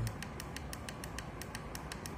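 Fast, even ticking, about seven short clicks a second, over a low background hum.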